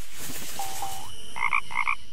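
Cartoon frog croak sound effect of the Frog Box production logo: two small rising croaks, then two louder croaks a second later, over a soft steady hiss.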